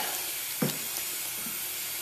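Metal spoon stirring crushed grain into hot strike water in a plastic cooler mash tun while doughing in: a steady wet hiss with a single knock about half a second in.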